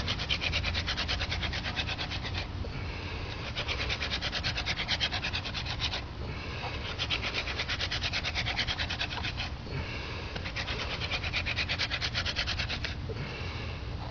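Hand-drill friction fire: a dog fennel spindle twirled back and forth between gloved palms, grinding into a sabal palm hearth board with a fast rasping rub. It comes in bouts of two to three seconds with short breaks between them, and a new bout starts near the end.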